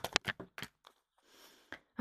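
Small tarot cards being drawn from a deck and laid on a cloth-covered table: a quick run of light clicks and taps in the first second, then one more tap near the end.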